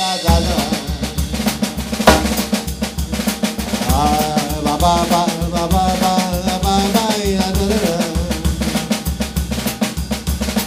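Drum kit playing a paso doble beat: a steady bass-drum pulse with snare, and a loud cymbal crash about two seconds in. A man sings the tune over the drums from about the middle, imitating a tenor.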